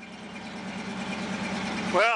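A steady low mechanical hum from a running motor or engine, over a constant background noise, fading in and growing louder through the first second or so.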